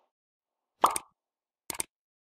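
Interface sound effects of an animated like-and-subscribe button: a single short pop about a second in, then a quick double mouse-click near the end.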